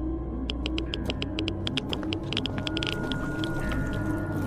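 Ominous ambient music with a low droning bed and slow, wavering eerie tones. Over it, a quick, irregular run of sharp clicks starts about half a second in and thins out near the end.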